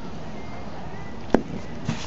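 Steady background noise with one sharp click a little past halfway and a fainter one near the end, from bottles of acrylic paint being handled while paint is squeezed out.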